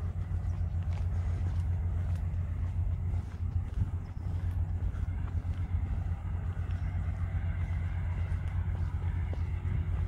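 Wind buffeting the microphone: a steady low rumble that flickers rapidly in loudness.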